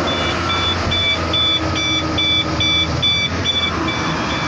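A Howo dump truck's warning beeper sounding a regular two-tone beep about two and a half times a second while the tipper body is raised, over the steady hum of the diesel engine driving the PTO hydraulic pump.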